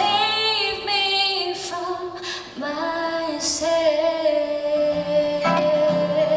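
A woman singing a slow ballad live, her voice wavering with vibrato and holding one long note through the second half, with acoustic guitar accompaniment that comes through more clearly near the end.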